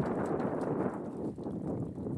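A ewe's hooves stepping through wet mud and straw, with many short squelches and clicks over a steady rushing noise.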